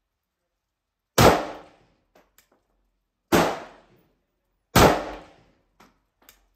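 Three shots from a WASR AK-pattern rifle fitted with a KNS gas piston, spaced about two seconds and then a second and a half apart, each sharp report echoing off for about half a second.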